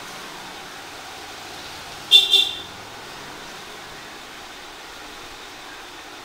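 A vehicle horn gives two quick toots about two seconds in, over a steady background hiss.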